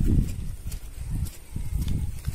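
Footfalls of a bullock and the person leading it on wet soil and straw, as soft uneven thuds under a low rumble.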